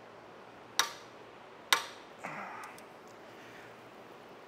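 Two sharp clicks of steel hand tools about a second apart, from a wrench and socket being set on the BMW M62TU V8's exhaust-camshaft sensor-gear nut while the cam is held. A short, softer scuffing noise follows.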